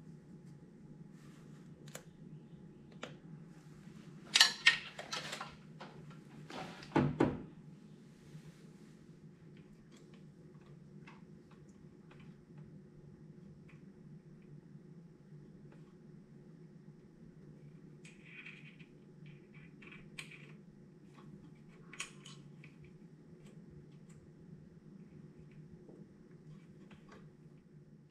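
Handling noise: scattered clicks and knocks, with two louder clattering bursts about four and seven seconds in and a few lighter knocks later, over a steady low hum.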